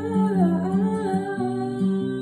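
A woman singing a wordless vocal line that slides up and down in pitch, over an acoustic guitar playing picked notes.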